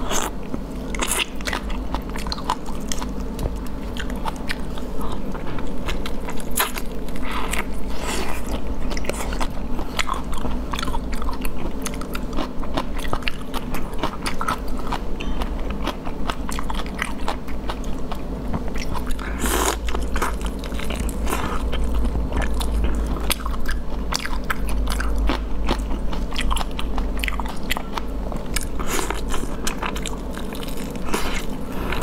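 Close-up eating of whole cooked prawns: shells cracking and peeling under the fingers, with biting and chewing. Many sharp crunches and clicks follow one another throughout, one louder than the rest about two-thirds of the way through.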